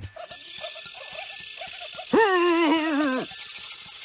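A corgi vocalizing: a few faint short yips, then about two seconds in one long wavering whine that dips slightly in pitch and lasts about a second, the loudest sound here.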